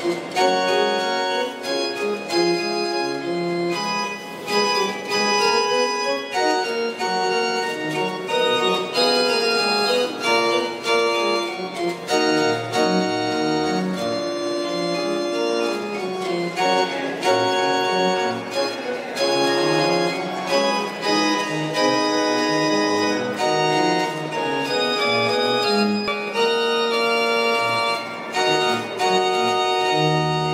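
Pipe organ of the Basilica Palatina di Santa Barbara played from its keyboard: sustained chords and moving lines of notes that change every second or so, without a break.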